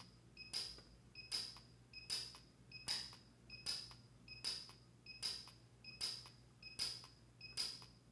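Lampert PUK U5 micro TIG pulse welder firing in rapid-fire mode: a short high beep from the machine, then a sharp snap as each arc pulse fuses the filler wire to the steel, repeating about every three-quarters of a second.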